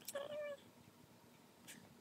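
A cat gives a single short meow, about half a second long, right at the start, followed later by a faint light tick.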